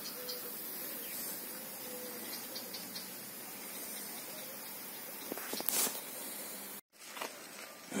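Faint steady hiss of water escaping from a burst underground water pipe and running into a flooded pit. The sound cuts out for an instant near the end.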